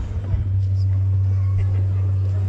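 Loud, steady low drone from the stage's amplified sound system, setting in about half a second in and holding without change as the busier music drops away.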